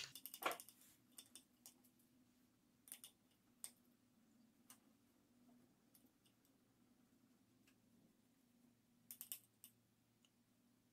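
Faint, scattered light clicks and taps of a paintbrush and small painting supplies being handled, with a short run of quick clicks near the end, over a faint low steady hum; otherwise near silence.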